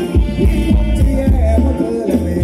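Thai ramwong dance music from a live band: a heavy, pulsing bass and a steady drum beat under a held melody line.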